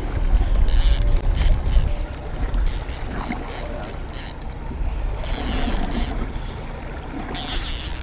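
Steady low rumble of a small boat on open water, with wind on the microphone and several short bursts of hiss.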